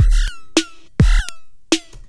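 Drum loop run through a Moog MF-107S FreqBox plugin with its FM and envelope amounts turned up: a pretty ridiculous sound. Each kick drum, about a second apart, comes with a bright synth zap that falls quickly in pitch, and smaller pitched hits fall in between.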